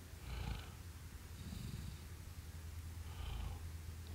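Faint breathing of a man pausing between sentences, a few soft breaths over a low steady hum.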